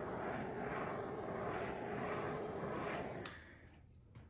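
Handheld torch flame hissing steadily as it is swept over freshly poured epoxy resin to pop the surface bubbles. It cuts off with a click about three seconds in.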